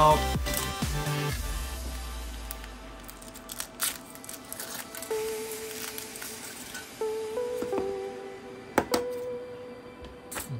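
Background music with held notes, under handling noises: foil crinkling and a few sharp clicks as a Kinder Surprise chocolate egg is unwrapped and its plastic toy capsule lifted out.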